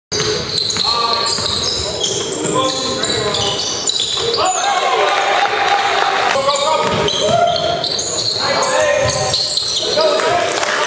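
Live basketball game sound in a gym: a basketball bouncing on the hardwood court, short high sneaker squeaks, and players' and spectators' voices and shouts echoing in the hall.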